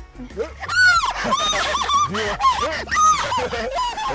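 A woman squealing and shrieking again and again in a very high pitch, crying "no!", over background music.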